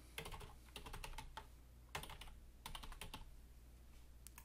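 Faint typing on a computer keyboard: quick runs of keystrokes in three short bursts, with brief pauses between them.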